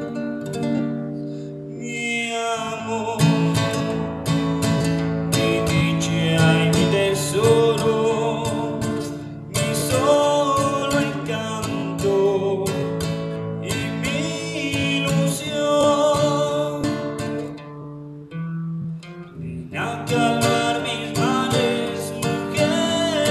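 Acoustic guitar strummed and picked in a pasillo rhythm, with a man singing over it.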